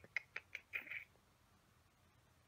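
A quick run of about six short clicks and paper rustles from hands handling a planner page, all within the first second.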